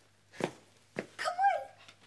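Two short, sharp barks about half a second apart, followed by a brief whine that falls in pitch.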